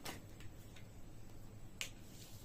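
Tarot cards being drawn from a deck and laid down, giving a few sharp card clicks: a strong one at the start, another near the end, and fainter ones between.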